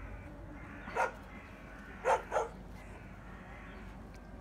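A dog barking: one short bark about a second in, then two quick barks about a second later.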